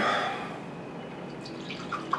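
Grape juice being poured from a carton into a cup: a faint liquid trickle, with a few small drips near the end.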